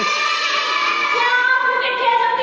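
A group of children's voices in unison, held on long sung notes.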